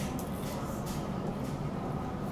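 Steady restaurant background noise: a low hum and a faint even murmur, with a few faint light ticks.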